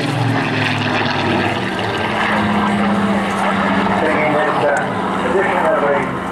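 Rolls-Royce Griffon V12 engine of a Spitfire Mk XIX in flight, a steady propeller drone.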